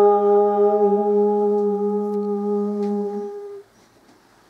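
A man's voice holding one long sung note of a chant, with a small room's echo. It stops sharply about three and a half seconds in.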